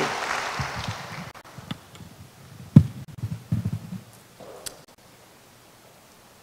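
Audience applause dying away over the first second, then scattered soft knocks and rustles, with one sharper thump a little before the middle.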